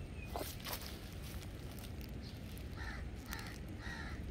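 Harsh, caw-like bird calls, three in the last second and a half, over a steady low outdoor rumble, with two brief sharp sounds under a second in.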